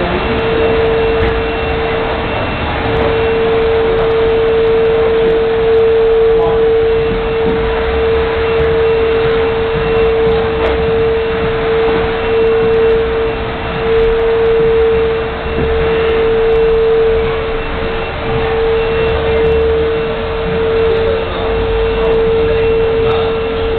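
A steady, unchanging mid-pitched tone held throughout, with a few brief dips, over a constant background hiss.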